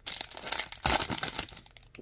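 Foil trading-card pack wrapper crinkling and being torn open by hand, with the loudest rip just under a second in.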